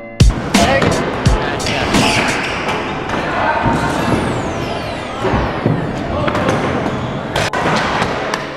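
Indoor skatepark noise: stunt scooter wheels rolling and clattering on the ramps, with scattered sharp knocks and thuds of landings and decks hitting the surface, echoing in a large hall amid voices.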